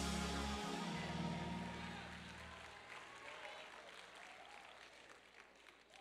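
A church band's held chord with bass fading out over the first two and a half seconds. Congregation shouting and applause die away under it.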